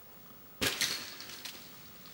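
A mountain bike thrown down onto the ground: a sudden crash about half a second in, a second hit right after, and a brief metallic rattle and ring that fade within about a second.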